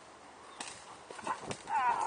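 A German shepherd doing bitework, with a few scuffs and knocks as it is let go and lunges at a decoy in a bite suit. Near the end a loud, high, wavering cry sets in as the dog reaches the decoy.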